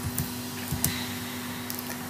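Steady background hum and hiss of the recording room, with a couple of faint clicks about a second apart.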